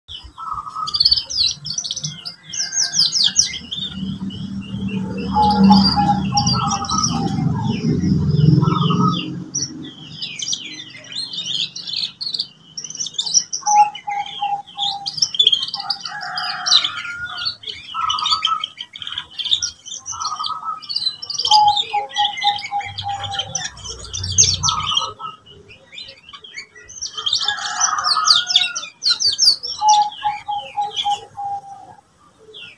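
Young canary singing a long, varied song of rapid high trills and chirps, broken by lower rolling trills, as it learns to put its song together. A low rumble sits under the song for a few seconds near the start and again briefly later.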